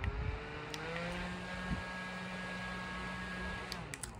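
Small handheld battery-powered fan running, switched up through its three speeds: its motor whine climbs in pitch over the first second or so, then holds steady until it stops shortly before the end.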